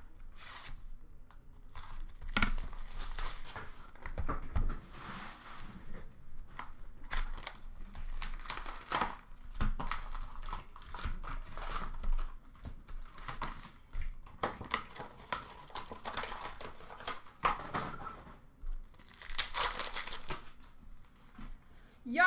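Upper Deck hockey card packs and their box being torn open and handled: irregular tearing and crinkling of pack wrappers and cardboard, with louder tears a few seconds in and again near the end.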